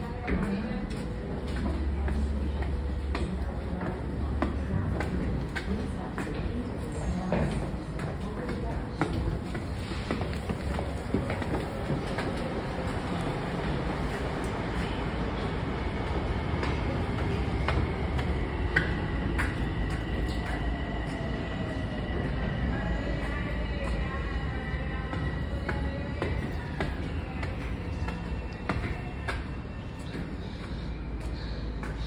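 Long Island Rail Road M7 electric train running on the tracks: a steady rumble of wheels on rail with scattered clicks. A thin high whine sets in about halfway through and holds for about ten seconds.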